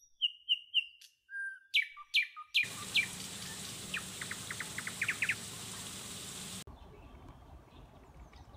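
Birds chirping: a string of short whistled chirps and notes, then a quick run of rapid rising trill notes over a steady background hiss that drops away near the end.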